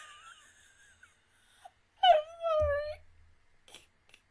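A woman's high-pitched, wavering squeal of laughter, one loud drawn-out cry about two seconds in, with a low thump under it.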